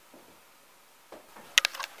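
Quiet room tone, then a quick run of four or five sharp clicks close together about a second and a half in.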